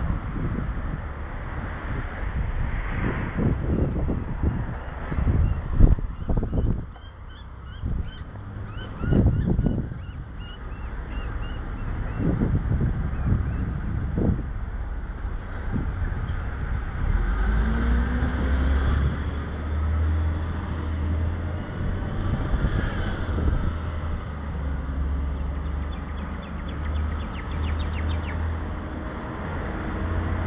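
Riding noise on a bicycle-mounted camera: wind rushing over the microphone and knocks from bumps in the footpath, with a run of short high chirps about a third of the way in. After about half way a motor vehicle's engine hum from the road takes over, steady and low, with its pitch rising and falling.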